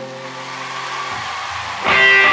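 Live rock-ballad music: a sung note dies away into a quieter lull with a low sustained note, then an electric guitar comes in loudly with a ringing strum near the end.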